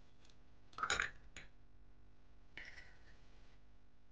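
A stainless steel spiral egg separator clinks sharply against a glass bowl about a second in, followed by a lighter tap. A softer, longer rustling sound follows near the end.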